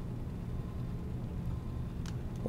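Steady low background hum with a faint thin high tone above it: the recording's room and microphone noise, with no other event.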